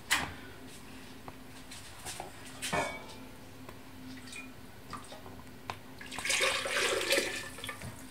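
Cooking liquid poured from a metal saucepan into a glass blender jug, a splashing pour in the last two seconds or so, after a few light knocks of the jug and pan being handled.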